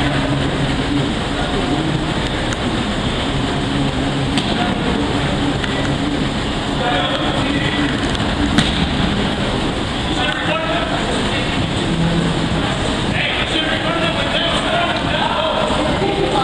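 Players' voices calling out during an indoor soccer game, over a steady dense background noise, with one sharp knock about eight and a half seconds in.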